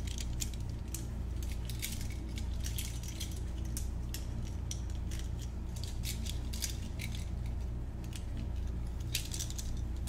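Metal handcuffs handled close to the microphone: the cuffs and chain links clinking in an irregular string of small sharp clicks.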